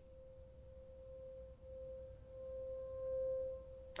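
A single sustained, pure electronic tone from a film soundtrack, slowly swelling louder with two brief dips, over a faint low rumble.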